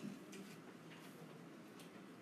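Near-silent room tone with a few faint, irregularly spaced ticks and a soft bump at the start.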